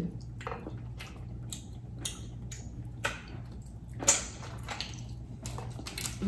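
Boiled crawfish shells being cracked and peeled by hand: a run of short, irregular crackles and clicks, loudest about four seconds in, over a low steady hum.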